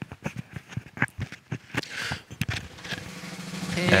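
A quick run of drum hits, like a snare-led drum fill, with backing music swelling in over the last second as the intro to a birthday song.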